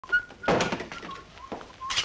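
Knocking on a wooden door: one heavy thud about half a second in, followed by a quick run of lighter knocks, with another knock near the end.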